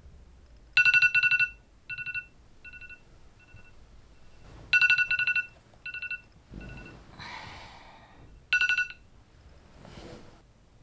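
A phone ringtone: a bright, rapidly trilling ring that sounds three times, the first two followed by fading repeats, like echoes. A brief swish comes just before the third ring.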